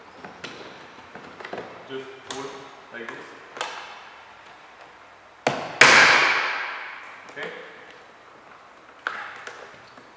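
Hands working on car door trim, with scattered taps and clicks of plastic and metal. About five and a half seconds in comes one loud, sharp bang that rings on and fades over a couple of seconds.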